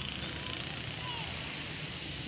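Steady outdoor background noise, an even hiss with faint distant voices.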